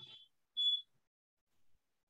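A single short, high-pitched electronic beep about half a second in, one steady tone lasting about a third of a second.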